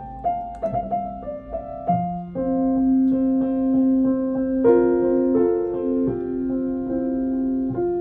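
1936 Blüthner style IVa grand piano being played: a quick run of notes in the first two seconds, then slow, sustained chords that ring on and change every second or so.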